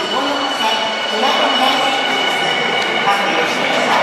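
Tokyu 5050 series electric train departing an underground station platform, its motors and wheels running as it pulls away, with a steady high tone.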